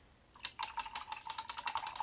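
A paintbrush rattled quickly against the inside of a water container to rinse it: a fast run of clicks with a ringing tone under them, starting about half a second in.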